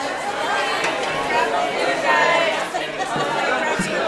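Many people talking at once in a large room: the overlapping chatter of a mingling crowd.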